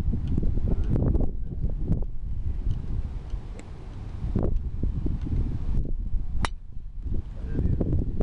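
Wind buffeting the microphone, with one sharp crack about three-quarters of the way through as a driver strikes a golf ball.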